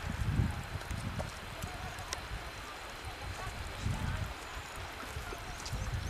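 Wind buffeting the microphone in uneven low rumbling gusts, over a steady rushing hiss.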